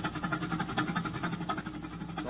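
Tractor engine sound effect running with an even, repeating beat, while the last of the bridge music fades out under it.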